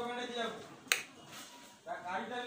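A voice sounding briefly at the start, then a single sharp click about a second in.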